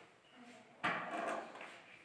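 Storage box built into a wooden bed being opened: a sudden knock about a second in, followed by brief scraping and rattling that fades.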